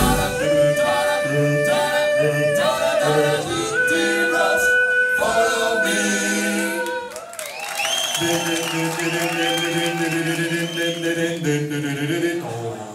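A vocal group singing close harmony a cappella, the voices holding long chords together. About two-thirds of the way in, a high lead voice sings over sustained backing harmony.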